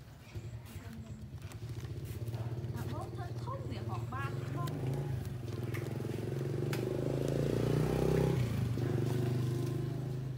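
A small engine running steadily nearby, swelling to its loudest about seven to nine seconds in and dropping away at the end.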